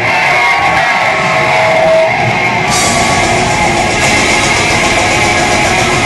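Live black/death metal band playing at full volume: dense distorted guitars and drums. A brighter, hissier top layer comes in about three seconds in.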